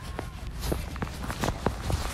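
Footsteps on a concrete walkway, several steps in quick succession, over a low steady rumble.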